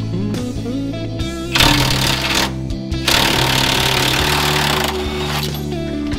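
Background guitar music plays throughout. Over it come two bursts from a cordless impact wrench undoing the inner lower control arm bolt: a short one about a second and a half in, then a longer one from about three seconds in to near five.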